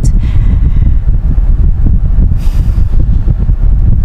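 Steady low rumble inside a car's cabin, with a short hiss a little past halfway.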